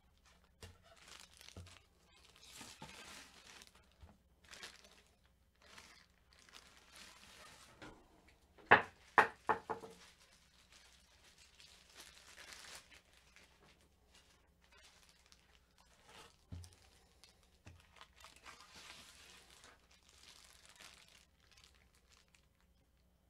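Clear plastic wrapping crinkling and rustling in bursts as it is handled, with a quick run of about four sharp knocks about nine seconds in, the loudest sound.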